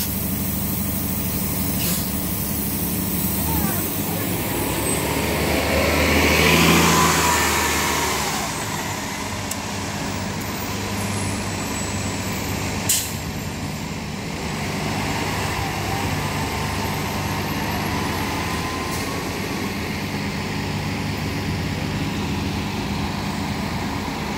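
2015 Gillig Advantage low-floor transit bus running, then pulling away from the stop. The engine swells to its loudest about six to seven seconds in, then settles as the bus drives off. A single brief sharp sound comes about thirteen seconds in.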